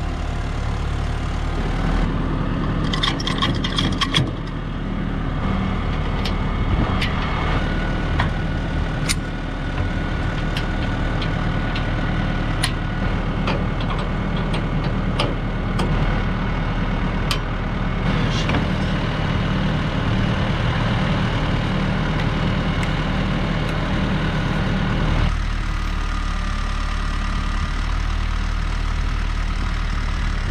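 New Holland T2420 compact tractor's diesel engine idling steadily, with scattered sharp metallic clanks and clicks from the rotary mower being hitched to the three-point linkage. The engine's sound changes near the end.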